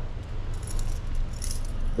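Keys jingling lightly in two short bursts over a steady low hum.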